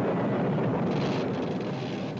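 Steady engine noise from archival war film footage, with a brief hiss about halfway through.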